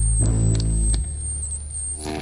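Electric guitar and bass guitar through Marshall amplifier stacks, loose sustained notes ringing rather than a song: a string is struck just after the start and the deep low note cuts off about a second in. A steady thin high whine sits over it.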